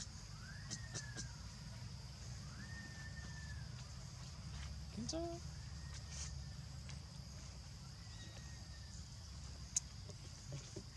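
Repeated high, arched animal calls, each rising and falling within under a second, about every two seconds, over a steady high hiss. A short rising call comes about five seconds in, and a sharp click near the end.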